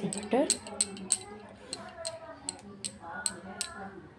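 Butter sputtering as it melts on a hot iron tawa: about a dozen irregular, sharp crackling pops.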